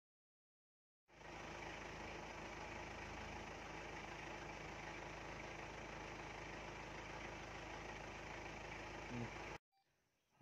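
Safari jeep's engine idling steadily, starting about a second in and cutting off abruptly just before the end, with a short louder blip shortly before it stops.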